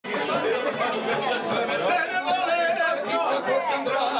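Several people talking over one another at once, a steady murmur of chatter with no single voice standing out.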